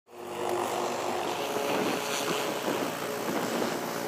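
Military helicopters' turbine engines and rotors running steadily on the flight line, a continuous rush with a few held engine tones, fading in at the start.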